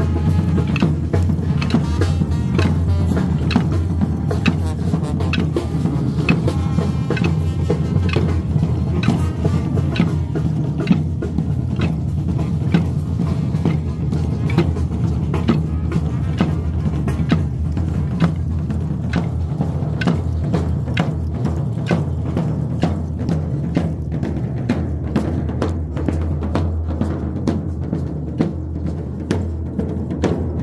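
Tamborazo brass band playing as it marches: a steady beat on the tambora bass drum under a sustained sousaphone bass line.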